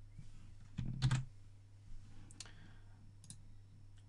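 A few short, sharp clicks from a computer's mouse and keyboard, a quick cluster about a second in and single ones later, over a steady low hum.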